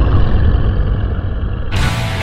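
A loud, deep rumble with the treble cut away. About a second and a half in, full-range heavy metal music with electric guitar comes back in.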